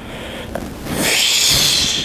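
A man hissing with his mouth, imitating steam escaping like from a steam train. The hiss starts quietly and gets loud about halfway in, held for about a second.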